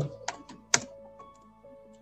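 A few keystrokes on a computer keyboard, the sharpest click about three-quarters of a second in, over quiet background music with held tones.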